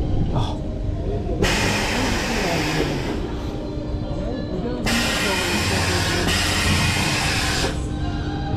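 Steel roller coaster train creeping along its brake run while two long, loud blasts of hissing air go off, the first about a second and a half in and the second straight after, each lasting about three seconds, over a low rumble.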